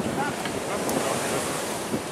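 Steady rush of ocean surf with wind buffeting the microphone.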